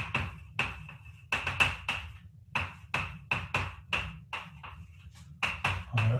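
Chalk writing on a blackboard: an irregular run of short, sharp chalk taps and strokes, about two or three a second, as words are written out.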